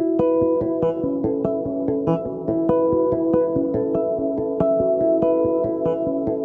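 Zon Hyperbass electric bass playing a melodic passage of quickly plucked notes, several a second, each note ringing on and overlapping the next.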